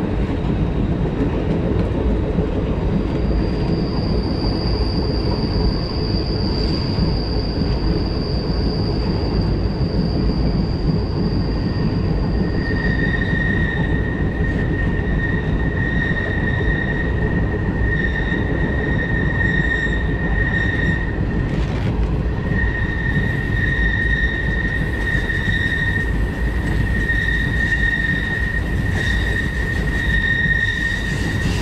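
Passenger train's steel wheels squealing against the rails on a curve, over the steady rumble of the rolling train. A thin, high squeal holds for several seconds, then gives way to a lower squeal that breaks off and returns again and again.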